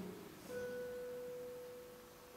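Classical guitar ringing out one soft, pure note, a harmonic, plucked about half a second in and left to fade slowly as the preceding chord dies away.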